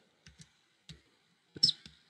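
Computer keyboard keystrokes: a few separate key presses, the loudest near the end.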